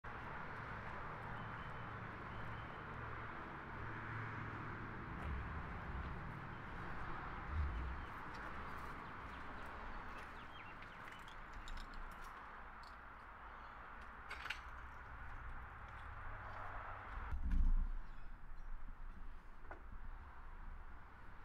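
Outdoor ambience: a steady hum of road traffic with faint bird chirps and a few light clicks. Near the end the hum drops away suddenly and a loud thump follows.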